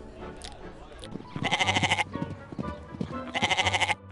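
Goat bleating twice, each bleat about half a second long with a quick wavering pulse, the second near the end.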